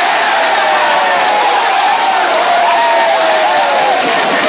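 Football crowd cheering a goal scored from a free kick, a steady roar of voices, with one nearby fan holding a long shout that slowly falls in pitch.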